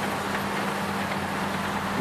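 Heavy earthmoving machinery running at a steady drone, with a constant low engine hum and no distinct events.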